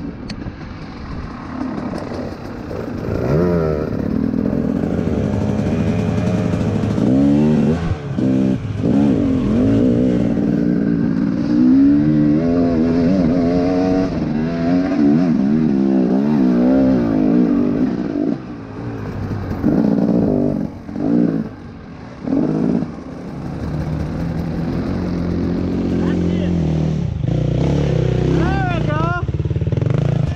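Dirt bike engine revving unevenly in quick throttle blips, its pitch swinging up and down. The engine drops back several times in the second half and revs higher near the end.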